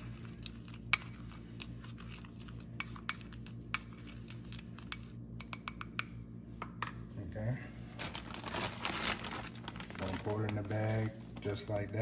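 A spoon stirring dry seasoning in a small glass bowl: a run of light, irregular clicks as it taps and scrapes the glass, then a brief rustle.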